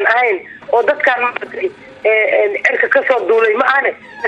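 Speech only: a woman speaking in Somali, with a radio-like sound quality.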